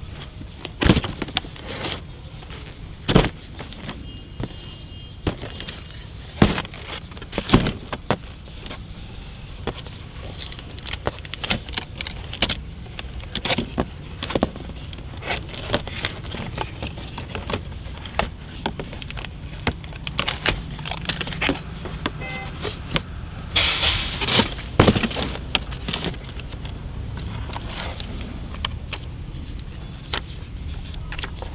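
A cardboard box being handled and opened by hand: scattered sharp clicks, taps and scrapes of cardboard and its plastic carry handle, with a denser stretch of rustling and scraping about three-quarters of the way through, over a steady low rumble.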